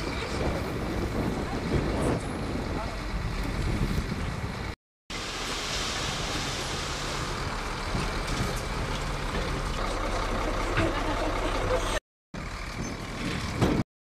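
Heavy dump truck's diesel engine running while its tipper bed is raised and soil slides out of the back. The sound is steady and is broken by two brief silent gaps.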